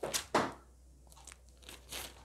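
Thin Bible pages being turned by hand: two quick papery rustles close together at the start, then softer rustles near the end.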